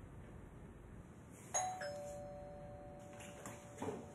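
Two-tone doorbell chime about a second and a half in: a higher note, then a lower one, both ringing on. A soft thump follows near the end.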